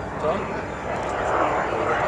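Saab JAS 39C Gripen's single Volvo RM12 turbofan engine heard as a broad rushing jet noise as the fighter flies overhead, swelling louder through the second half.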